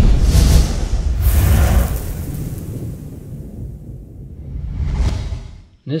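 Intro music sting of whooshing sweeps over a deep rumble, fading out over a few seconds, with one last whoosh about five seconds in.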